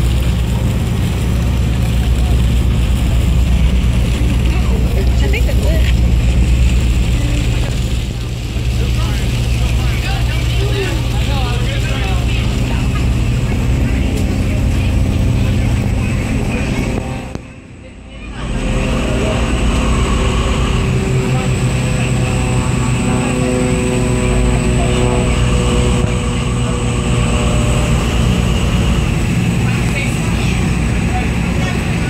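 Boat engine running steadily with a low drone, heard from on deck of the moving boat. The sound drops away briefly just over halfway through, then returns.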